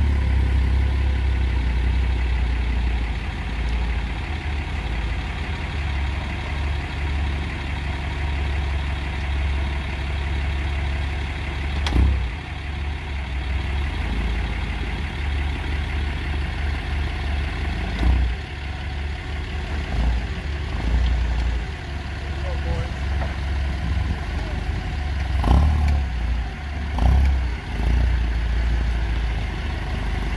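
Propane-fuelled Toyota forklift engine running steadily while lifting a lathe on its steel stand off a pickup's bed, with a few sharp clunks spread through it.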